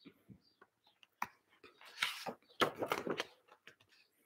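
Quiet rustle and a few light knocks of a picture book's paper pages being turned and the book handled, with the clearest rustle about two seconds in.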